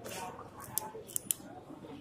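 Hands handling the copper windings in a cooler motor's stator: a brief rustle at the start, then a few short, sharp clicks around the middle.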